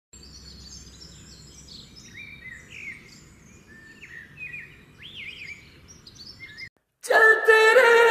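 Birds chirping and singing in many short rising and falling calls over a faint low rumble, cutting off suddenly. After a brief silence, music starts loudly with long held notes near the end.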